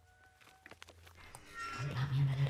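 Faint room tone with a few soft clicks, then near the end a loud low hum begins, wavering slightly in pitch.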